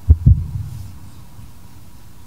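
Two dull, low thumps in quick succession at the very start, fading within about half a second: a chalice being set down on the cloth-covered altar.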